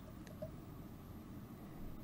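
Quiet room tone: a faint low hum with a single faint tick about a quarter second in.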